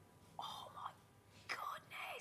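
A soft, breathy voice speaking in near-whispers, twice briefly.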